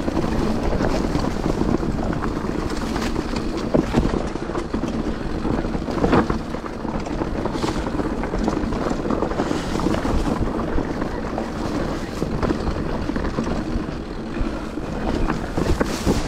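Mountain bike riding fast down a rough dirt singletrack, heard from a camera on the bike or rider. Wind rushes steadily over the microphone, mixed with tyre and bike rattle, and there are a few sharper knocks from bumps, around four and six seconds in.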